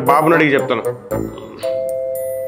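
A man's voice for about a second, then, about a second and a half in, a steady electronic chime sets in on two held pitches.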